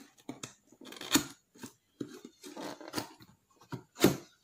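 Cardboard box being handled and its inner tray slid out: an irregular run of short scrapes and taps, the sharpest about a second in.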